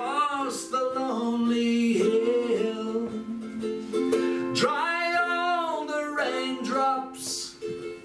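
A man singing a slow country song and accompanying himself on a strummed ukulele, with one long held sung note around the middle.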